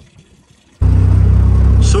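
JCB telehandler's diesel engine running, heard from inside the cab as a loud, steady low rumble that cuts in suddenly about a second in, after a brief quiet.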